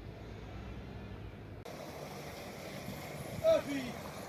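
A low steady engine hum that breaks off suddenly about a second and a half in, giving way to an even outdoor hiss. A person's voice is heard briefly near the end.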